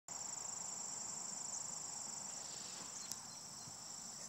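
Insects trilling outdoors: a steady, high-pitched, rapidly pulsing chorus, with a small click about three seconds in.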